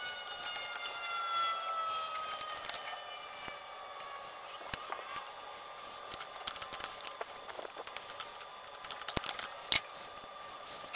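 Open-end wrench working the 14 mm master-cylinder mounting nuts on a brake booster, making scattered metal clicks and scrapes, with a sharp click near the end. A faint tone glides slowly downward in the background over the first few seconds.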